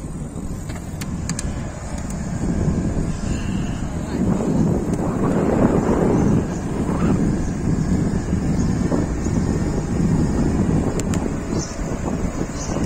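Wind rumbling on the microphone and road noise from a bicycle ride along a city street, with traffic getting louder from about four seconds in.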